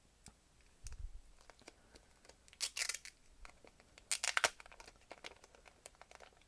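Clear plastic protective film being peeled off an aluminum TV remote: quiet crinkling and small clicks, with two louder crackling rips about three and four and a half seconds in, and a soft thump about a second in.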